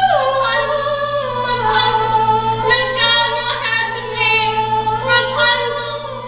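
A female voice singing a musical-theatre song on stage, in long held notes that slide from one pitch to the next.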